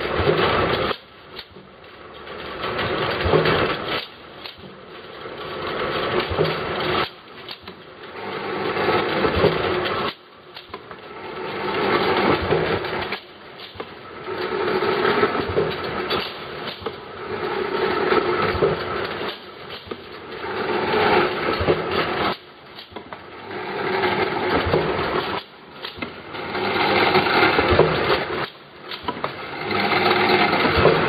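30 ml glass-bottle e-liquid filling and capping machine running through its cycle: a mechanical running noise swells over about two seconds and then cuts off abruptly, repeating about every three seconds.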